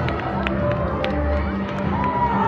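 Crowd of children talking and calling out over one another, with music playing underneath and a few short sharp clicks.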